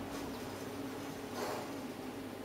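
Quiet workshop room tone with a faint steady hum, and one soft, brief handling sound about one and a half seconds in as the metal rod of the circle-cutting guide is moved on the steel sheet.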